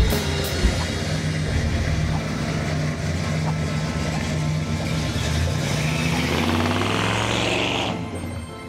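1976 Ford Gran Torino's V8 running as the car drives past, with a rush of tyre and exhaust noise that swells near the end as it goes by. Music plays underneath.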